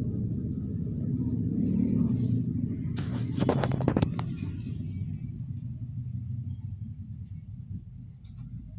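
Steady low rumble under small kitchen handling sounds; about three to four seconds in, a quick run of sharp clicks and clatter as a knife is put down on the ribbed metal worktop beside the plate.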